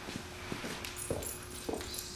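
A horse's hooves stepping on rubber barn mats: a few soft, muffled thuds about half a second apart, over a faint steady hum.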